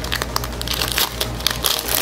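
Foil booster pack wrapper crinkling and crackling as it is torn open by hand, a dense run of small crackles.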